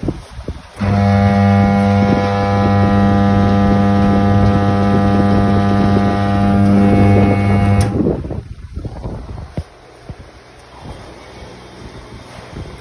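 1 HP electric vegetable cutter machine running empty: its motor starts about a second in with a loud, steady electric hum and is switched off about seven seconds later, followed by light handling noise.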